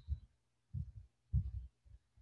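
Low, muffled thumps in quick, irregular bursts, several a second, over a faint steady hum, as picked up close on a headset microphone.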